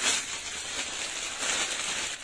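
Rustling and crinkling as a pink jacket and its plastic wrapping are handled and shaken out.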